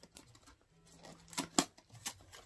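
A snack wrapper being pulled and worked at by hand while someone struggles to open it, with a few sharp crackles about a second and a half in.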